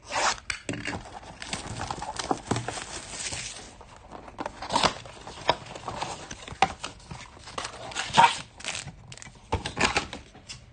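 Cardboard trading-card blaster box being torn open by hand: irregular sharp rips and scrapes of the cardboard flap and the packs being pulled out.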